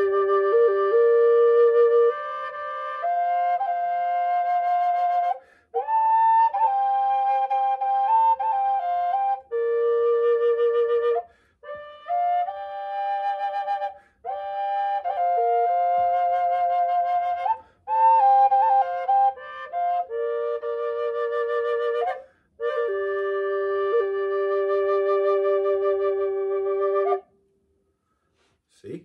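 Six-hole harmony drone flute in G, of reclaimed western cedar, with both chambers sounding at once so that two notes move together in a slow melody of held and stepping notes. The phrases are broken by short breaths every few seconds, and the playing ends about a second before the close.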